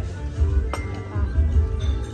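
Background music with a steady bass beat; about three-quarters of a second in, a small porcelain coffee cup clinks once against its saucer as it is set down, ringing briefly.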